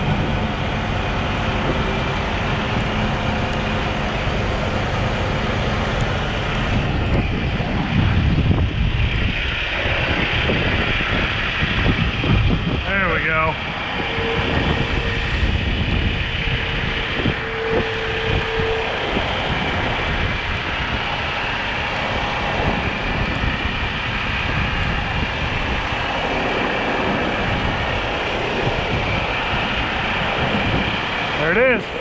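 Diesel engines of a heavy wrecker and a Volvo semi tractor running steadily under load during a winch-out, as the tractor is pulled and lifted back over a curb, with wind rushing on the microphone. A short wavering whine comes about halfway through, followed by a steady hum lasting several seconds.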